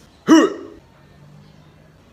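A young man's single short, startled "huh!" about a quarter second in, with a pitch that rises and then falls.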